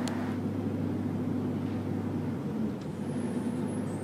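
Hoist FR 40/60 forklift's engine running steadily with a low hum.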